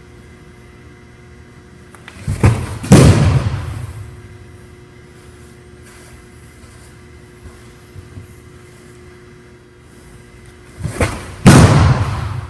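Two fastballs thrown about 85 mph, each ending in a loud thud as the baseball strikes the target and netting, echoing in a large hall: one about two and a half seconds in, the other near the end. A low steady hum lies underneath.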